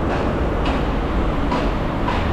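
City bus running at a kerbside stop: a steady low engine rumble mixed with street traffic noise.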